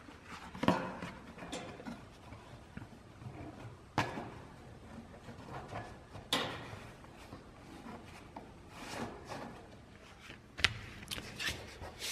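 Handling noise of a cardboard template being fitted and pressed into a sheet-metal tail-light opening: scattered rustling and scraping with three sharp knocks, the loudest under a second in.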